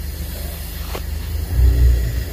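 Steady low mechanical rumble, like a motor running, that grows louder about a second and a half in.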